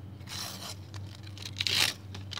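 A shiny foil Panini sticker packet being torn open by hand: crinkly tearing in two spells, the louder one near the end.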